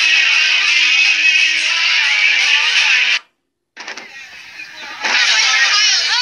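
Live music: a man singing into a microphone over acoustic guitar, with crowd noise, stopping abruptly about three seconds in. After a short silent gap, quieter room noise comes in, and near the end loud voices in a crowd take over.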